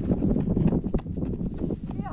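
Quick, irregular footsteps crunching on dry grass and stubble as someone runs.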